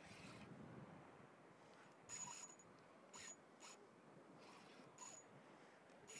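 Spinning reel's drag ticking out line in four short bursts as a hooked fish pulls against it, over a faint steady hiss.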